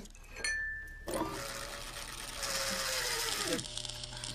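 A small electric motor, like a kitchen appliance, runs for about two and a half seconds and then winds down, its pitch dropping as it stops.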